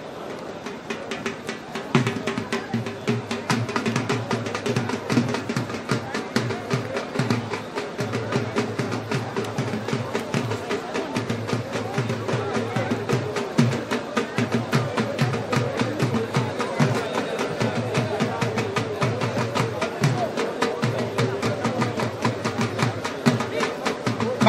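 Fast, continuous drumming with a dense, even beat that grows louder about two seconds in.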